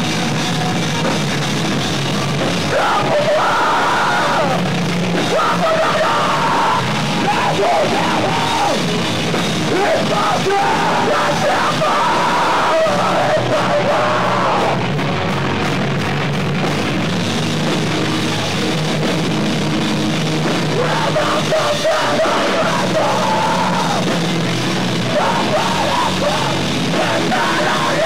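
Screamo band playing live, with loud distorted guitars and drums under screamed vocals that come in several phrases. The recording is distorted, overloaded by the camcorder's microphone.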